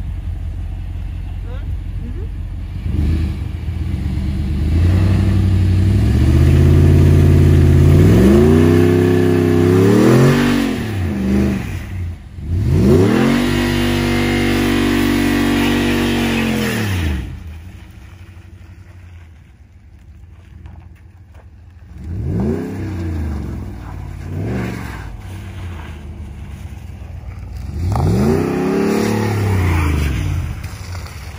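Ram 1500 pickup's engine revving hard in two long rising and falling pulls as it tries a burnout on ice, its wheels spinning. It drops back to a quieter idle about two-thirds of the way through, then gives several shorter revs near the end.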